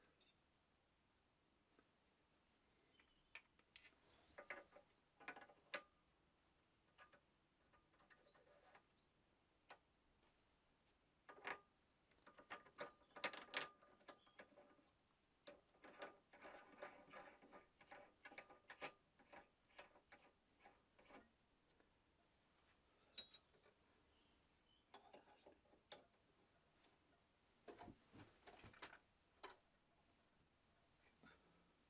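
Faint metallic clicks and light clinks of steel tooling being handled: an end mill and its plain-shank adapter fitted together and then put up into the milling cutter chuck on the mill spindle. The small taps come in scattered clusters, some with a brief ring.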